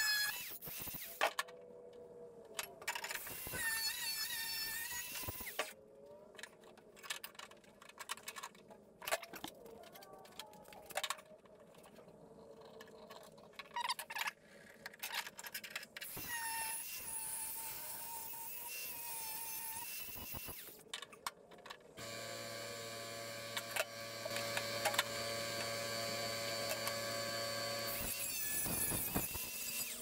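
Cordless angle grinder cutting into the sheet-steel floor tunnel of a VW Beetle, its whine wavering in pitch as it bites, in short stretches that break off abruptly, with a steadier stretch of held tones near the end.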